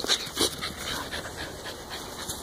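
A dog panting softly close by.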